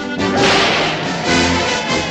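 Orchestral film-score music playing loudly, with a sudden burst of noise, a crash or crack, about half a second in.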